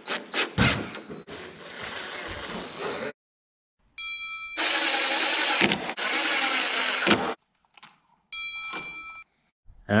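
DeWalt 20V cordless impact driver driving screws into a wooden workbench leg, in two runs of about three seconds each with a steady high whine, plus short, quieter whirs of the tool between them.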